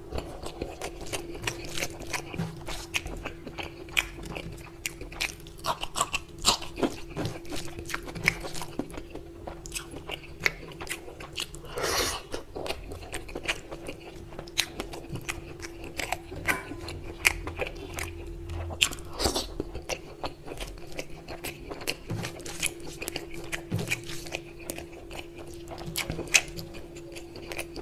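Close-miked chewing and wet mouth sounds of a man eating rice and mutton curry by hand, with the squish of his fingers mixing rice into the gravy. Many short smacks and clicks throughout, over a faint steady hum.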